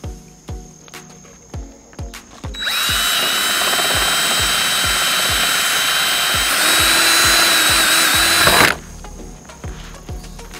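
Cordless drill with a half-inch bit boring through a plastic tailgate trim panel. It starts about two and a half seconds in, runs steadily with a high whine for about six seconds, and cuts off suddenly near the end. Background music with a steady beat plays throughout.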